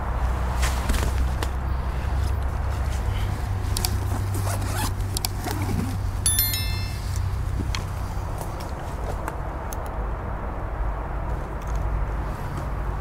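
A backpack zipper is pulled open about six seconds in, among scattered rustling and handling clicks. A steady low rumble runs underneath.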